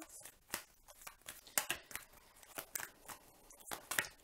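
A deck of tarot cards being shuffled by hand, the cards rustling and clicking against each other in irregular quick bursts, with a few sharper slaps.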